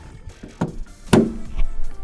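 Two sharp plastic clicks about half a second apart, the second louder, as a sun visor wearing a 3D-printed ABS sleeve is snapped up into a 3D-printed clip on the headliner. Background music plays underneath.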